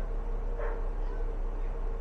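Steady hum of a Midea 12,000 BTU inverter air conditioner running with its compressor at low speed, a faint constant tone over a low drone.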